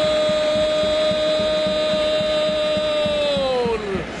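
A football commentator's long drawn-out shout on one held vowel, steady in pitch for about three seconds and then falling away near the end, over stadium crowd noise.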